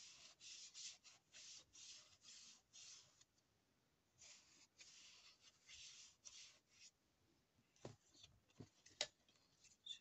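Faint soft strokes of a small ink pad being dabbed and rubbed across a stamp to ink it, about three a second in two runs with a short pause between, then two light taps near the end.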